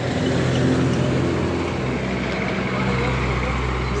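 Pickup trucks driving slowly past close by: a steady engine hum with road noise, and a deeper rumble that builds about halfway through as a second truck comes near.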